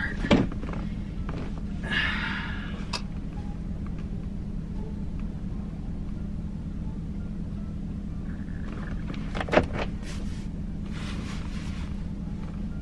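Steady low hum of an idling SUV heard from inside the cabin, with a thump just after the start, a brief noise about two seconds in and a sharp knock about nine and a half seconds in.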